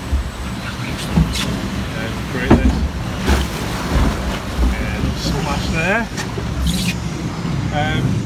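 Log-flume boat travelling along its water channel: a steady rumble of rushing, churning water with a few short knocks.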